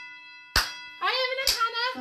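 Two sharp hand claps about a second apart, the last of four claps counted out in a nursery-rhyme action song, over a held musical note; a sung voice comes in between them.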